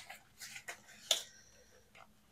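Soft handling noises from a ring binder of cash envelopes being leafed through: a few small clicks and rustles of plastic and paper, the loudest a little over a second in.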